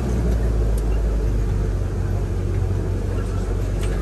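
Open-sided safari truck driving along a rough dirt track, heard from inside: a steady low engine and road rumble.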